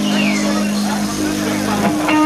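Live band's amplified guitars holding ringing, sustained notes that change pitch near the end, with shouting voices over them.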